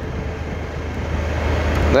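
Motorcycle engine running at a steady cruise, a low even hum under a haze of wind and road noise.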